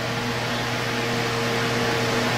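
Steady hiss with a low, even hum underneath: background room noise with no speech.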